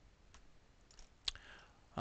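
A few faint, sharp computer mouse clicks, the loudest about a second and a quarter in.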